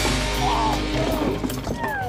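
Background music laid over the montage, a steady bed of held notes.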